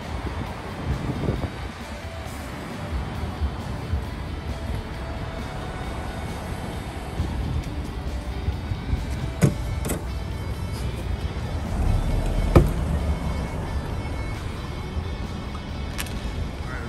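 Car road noise and engine rumble from inside a moving car, with music playing. A few sharp knocks come in the second half; the loudest is near the end.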